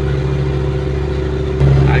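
Tractor-trailer's diesel engine pulling steadily up a grade, heard from inside the cab as a constant drone that gets louder about one and a half seconds in.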